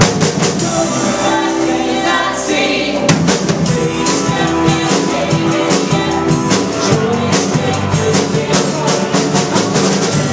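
Live worship band playing a song in a hall, with guitars, keyboard, drum kit and voices singing. The drums come in more fully about three seconds in, keeping a steady beat.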